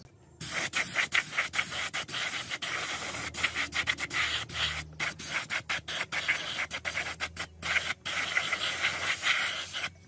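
Paint spray gun hissing as silver paint is sprayed onto a motorcycle drum-brake backing plate, the trigger worked in short bursts with many brief breaks.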